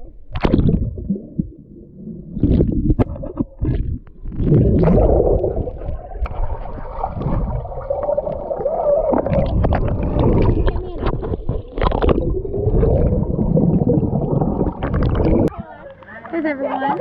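Muffled underwater sound picked up by a camera held under the surface of a swimming pool: water bubbling and churning with many short knocks and splashes. Muffled voices can be heard through the water.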